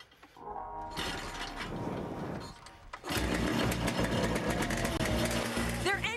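A kick-started engine on a junkyard-built golfing machine being cranked, then catching about three seconds in and running steadily.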